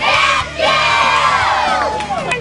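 A large group of children shouting together in a loud chorus: a short shout, then a longer one held for about a second and a half.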